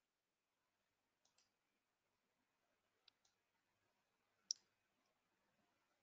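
Near silence with a handful of faint computer mouse clicks, some in quick pairs, the loudest about four and a half seconds in.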